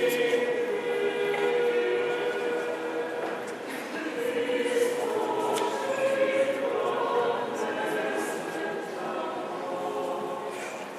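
Unaccompanied choir singing an Orthodox liturgical chant, several voices holding long, steady notes and moving slowly from pitch to pitch.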